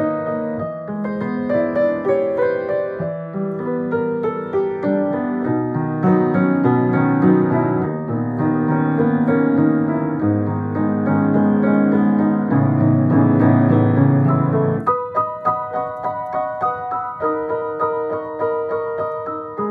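Solo piano playing a pop song with both hands: full, sustained chords in the low and middle register, changing about three seconds before the end to lighter, higher repeated notes.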